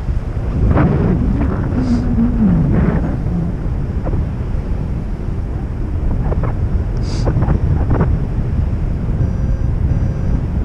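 Wind rushing over the microphone during a paraglider flight: a loud, steady low rumble of airflow, with a few brief fainter sounds over it.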